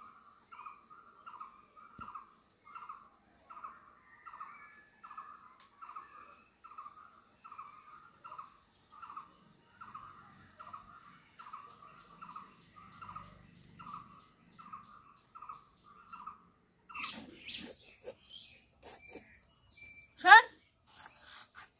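A bird repeating a single short note at a steady pace, about one and a half notes a second, faint. A few sharp clicks come near the end.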